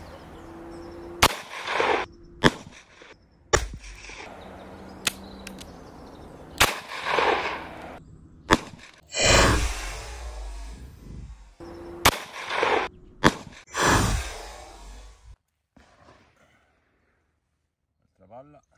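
Revolver shots from a Taurus Tracker firing .38 Special: a run of sharp cracks, the first three about a second apart, then several more later. Many are followed by a short rumbling tail.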